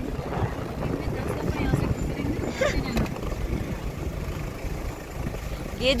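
Steady low rumble of road and engine noise inside a moving vehicle's cabin, with faint talk underneath and a woman's voice starting near the end.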